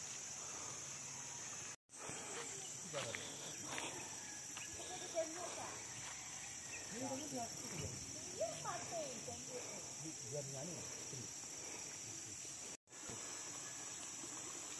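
Steady high-pitched chorus of insects, with faint, distant voices in the middle. The sound cuts out briefly twice.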